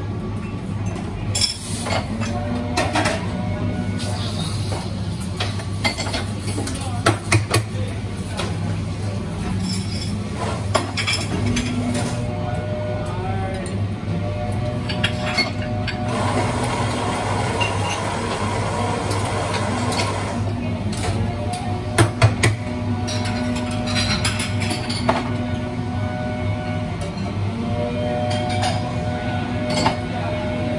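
Espresso-bar work sounds: cups, jugs and metal tools clinking and knocking, over the steady drone of a leaf blower running outside. A stretch of steady noise lasts about four seconds midway.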